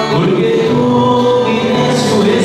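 Choir singing a hymn, holding long sustained notes that change pitch a few times.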